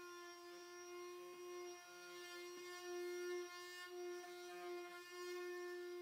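Cordless sheet sander running on a hardwood tray, a steady hum at one unchanging pitch whose level rises and falls a little as it works.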